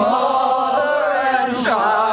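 A group of carolers singing together, several voices holding long notes and sliding between pitches.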